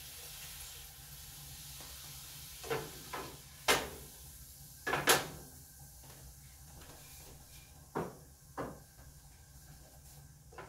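A soft sizzling hiss from a frying pan of spices and water heating on the stove, dying away about five seconds in, with about six sharp clacks and knocks of kitchen things being handled and set down, the loudest about four and five seconds in.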